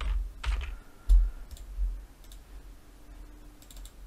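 Typing on a computer keyboard: a handful of separate key taps, the sharpest a little after a second in, then fainter ones spaced out toward the end.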